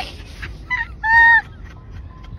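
A goose honking twice: a short call, then a longer, louder one just after a second in.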